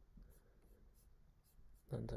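Near silence: low room hum with a few faint computer keyboard taps.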